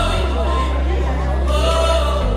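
Pop song played loud over a sound system: a sung vocal line over a sustained deep bass that steps to a new note shortly after the start.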